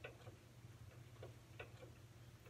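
Near silence: room tone with a low steady hum and a few faint, irregularly spaced small clicks.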